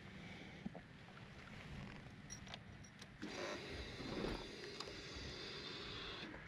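Small clicks at a parked Yamaha FZ1 as it is readied to start. About halfway through, a steady whir with a thin high tone sets in and runs about three seconds, just before the engine is started.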